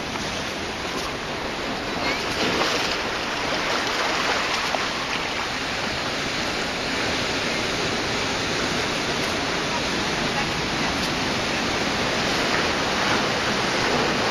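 Ocean surf washing over rocks, a steady rushing noise.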